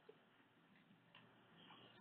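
Near silence: a pause between phrases of speech, with faint hiss and a couple of tiny clicks.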